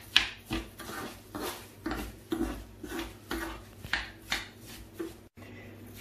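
A spoon stirring and scraping rice as it sautés in oil in a pan, in repeated strokes about twice a second.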